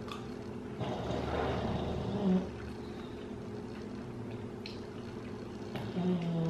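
Quiet eating at a table: a soft breathy mouth sound and a brief hum about two seconds in, then a couple of faint clicks of a metal spoon against a glass bowl near the end, over a steady low electrical hum.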